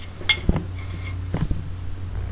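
A few light clinks and knocks of metal forks against ceramic plates: a sharp clink about a quarter second in, a dull knock just after, and smaller clicks near the end, over a steady low hum.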